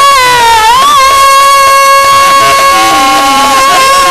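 A female voice singing in a Bengali devotional kirtan (Hari Sangeet), gliding about a second in and then holding one long high note steadily, amplified through a microphone. Fainter pitched tones sound underneath near the end.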